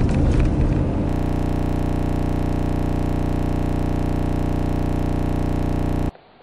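Road and engine noise inside a moving vehicle's cabin for about a second, then a steady, unchanging electronic buzz with many even overtones that holds at one level and cuts off suddenly at the end.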